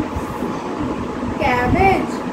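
A steady low rumble in the background. About one and a half seconds in, a toddler's brief high-pitched voice rises above it.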